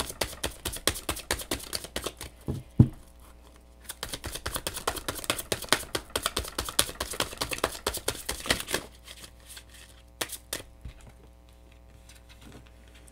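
A tarot deck being shuffled by hand: rapid flicking patter of cards in two long runs, broken by a single sharp knock about three seconds in. Near the end the patter gives way to a few separate taps as the cards are spread out.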